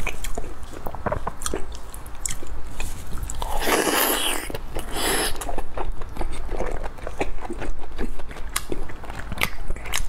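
Close-miked wet chewing and mouth clicks from eating soft, glazed red-braised pork belly, with two louder noisy bursts about three and a half and five seconds in.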